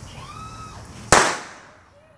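A single loud firecracker bang about a second in, dying away over about half a second.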